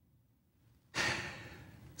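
Near silence, then about halfway through a man draws a sharp, audible breath that fades away.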